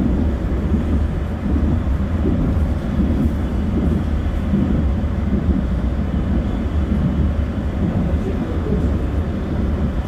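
Steady low rumble of road and engine noise heard from inside a moving car's cabin.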